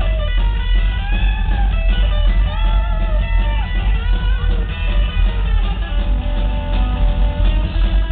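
Live rockabilly band playing loud, heard from the crowd: a twangy lead line on an orange Gretsch hollow-body electric guitar, its notes bent and wavering, over heavy bass and drums.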